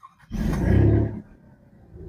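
Alfa Romeo Giulia Quadrifoglio's twin-turbo V6 cold-started with the push-button, heard from inside the cabin: a brief crank, then the engine catches with a loud flare of revs that lasts under a second before dropping back toward idle.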